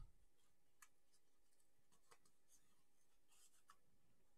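Near silence, with a few faint, brief ticks and rustles of card stock being handled and flexed.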